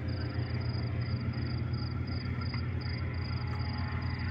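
Crickets chirping in an even pulse, about three chirps a second, over a low steady rumble.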